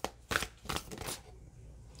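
A deck of tarot cards being shuffled by hand: a few quick card strokes in the first second, then it fades off.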